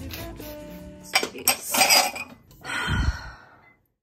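Handling clatter with a few sharp clinks, as of wine glasses being picked up, over faint background music. A low thump comes about three seconds in, then everything cuts off to silence near the end.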